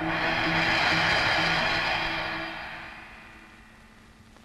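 Dramatic film-score music: a sudden crash-like swell of hissing, cymbal-like noise over low held notes. It fades away gradually over about three seconds.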